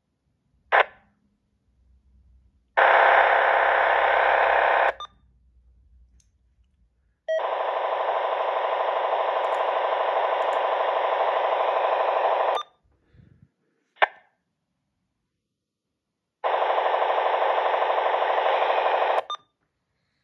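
Uniden BC125AT scanner's speaker giving out three long bursts of harsh, steady buzzing as the quick search stops on UHF transmissions around 460–462 MHz, with short squelch blips about a second in and just after the middle. The buzzing carries no voice, typical of digital radio signals heard on an analog FM receiver.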